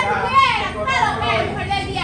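Speech only: voices arguing in Spanish.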